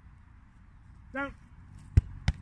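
A football kicked hard: one sharp, loud thud of boot striking ball at the very end, over a low wind rumble.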